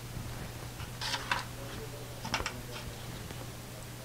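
Faint handling noises of plastic paint cups: a few light clicks and taps as cups are set down and picked up, over a steady low hum.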